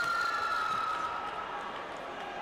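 A steady high-pitched tone, held level for about two seconds and fading near the end, over the general noise of a busy sports hall.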